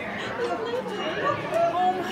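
Indistinct chatter of people talking in the background.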